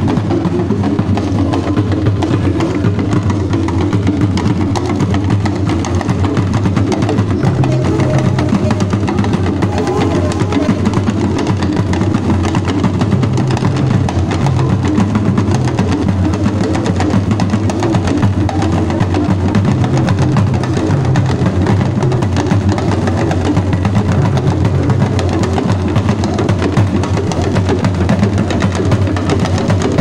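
Dagomba drum ensemble of hourglass talking drums and barrel drums playing a continuous, dense dance rhythm without pause.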